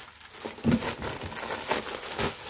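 Clear plastic packaging bag crinkling and rustling as a folded fabric suit inside it is lifted and handled, with sharper crackles about half a second in and near the end, and a soft bump early on.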